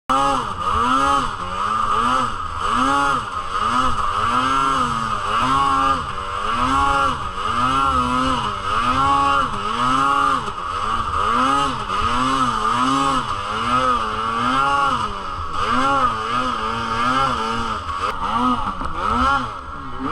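Arctic Cat M8000 snowmobile's 800cc two-stroke twin engine revved up and down again and again while riding in deep snow, each blip of the throttle a quick rise and fall in pitch.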